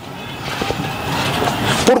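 A passing vehicle's noise, growing steadily louder as it approaches.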